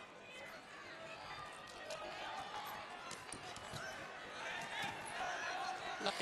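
Arena crowd and distant shouting voices during a wrestling bout, with scattered short clicks, growing louder near the end.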